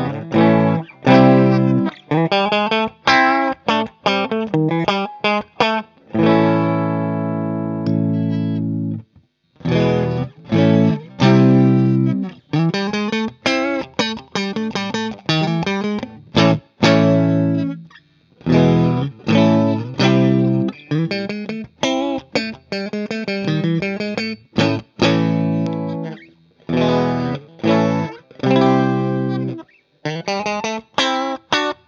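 Fender Mustang electric guitar with Mr Fabulous (D'urbano) Firebird mini-humbucker pickups, played through Amplitube 5 amp simulation: chords and riffs with short stops, one chord left ringing for about three seconds early in the passage. The tone moves from the bridge pickup to the neck pickup split to single coil, then the bridge pickup split, with brief pauses between passages.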